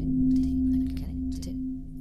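Ambient soundtrack music: a steady low ringing drone, like a singing bowl, with short hissing bursts over it. It grows a little quieter in the second second.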